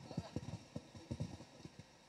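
A quick, irregular run of soft, dull thumps, several a second, thinning out over about two seconds.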